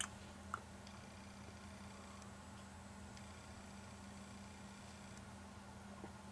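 Near silence: faint room tone with a steady low electrical hum. There is a click right at the start and a short soft sound about half a second in.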